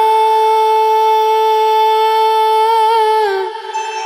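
Background music: a voice holds one long high note, steady for about three seconds, and then fades away.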